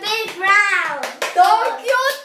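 A young girl's high-pitched voice talking animatedly in quick, gliding phrases with short breaks.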